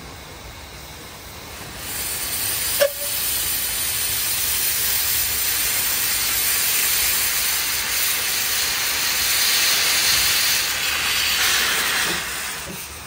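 Small narrow-gauge saddle-tank steam locomotive pulling away with its cylinder drain cocks open, blowing out steam in a loud, steady hiss that starts about two seconds in. A single short, sharp sound comes just under a second after the hiss begins.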